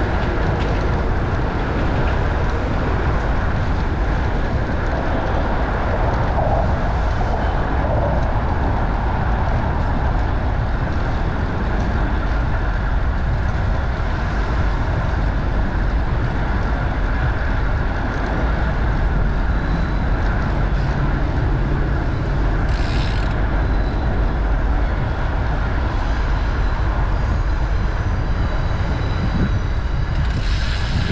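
Steady wind rumble on the microphone of a camera riding on a moving bicycle, mixed with city traffic and road noise, with one brief high hiss about two-thirds of the way through.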